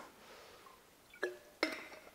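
Handling of a metal water bottle after a drink: two short clinks about a second and a half in, as the bottle and its cap knock together.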